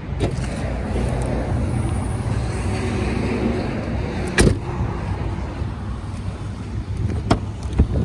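A motor vehicle engine idling, a steady low rumble throughout. There is a sharp click about four seconds in and a smaller one near the end.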